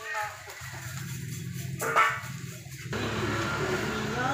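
Fish market ambience with music playing and people's voices, and a loud moment about two seconds in. The whole sound changes abruptly about three seconds in.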